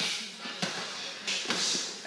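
A boxer shadowboxing on gym mats: a few soft scuffs and light thuds of footwork, with a short hissing breath about one and a half seconds in.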